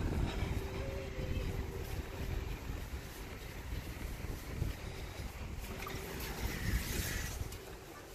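Wind rumbling on the microphone during a walk outdoors, easing off near the end.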